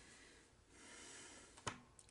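Near silence: a faint breath out through the nose around the middle, then a single sharp click near the end.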